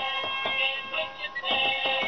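A DanDee animated Halloween broom toy playing its song: music with a synthetic-sounding singing voice.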